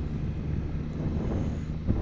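Can-Am Spyder three-wheeled motorcycle's engine running at a steady cruise, a low even hum, with wind noise over the microphone.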